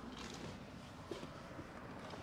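Faint rustling and handling noise of a person climbing into the back seat of a car.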